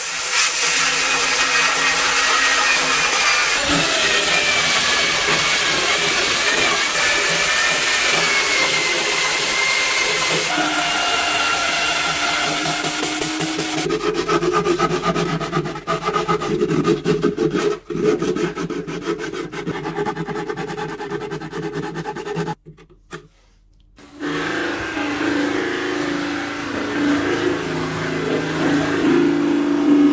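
A drill with a rotary sanding disc sanding a wooden vessel as it spins on the lathe: a steady hiss of abrasive on wood over a wavering motor whine. About halfway it gives way to a lower, steadier motor hum. After a brief silence near the end comes the low steady hum of a cloth buffing wheel with the piece pressed against it.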